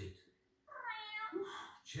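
A cartoon cat's meow: one drawn-out call of a little over a second, heard through a television speaker in a room.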